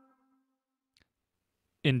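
A held musical note, steady in pitch, fades out, leaving near silence broken by a single faint click about a second in. A man's narrating voice starts just before the end.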